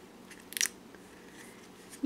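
Handling noise from a plastic capsule toy egg and a small toy figure being pulled out of it: a short crackle about half a second in, otherwise faint.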